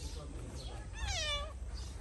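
A cat meowing once, about a second in: a single short call that rises and then falls in pitch.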